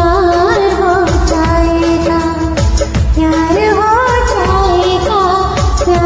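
Hindi film song sung as a karaoke duet over its recorded backing track: a melody held and gliding with vibrato over a steady drum pattern with low sliding drum strokes.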